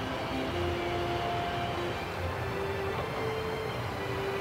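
Soft background film music: a slow melody of single held notes moving step by step, over a steady ambient hum.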